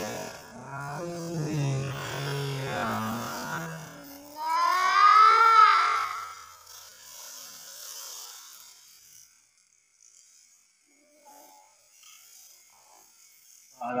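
A man's low, drawn-out groans while his back is kneaded in a deep traditional massage, then a loud high-pitched cry that rises and falls about four seconds in.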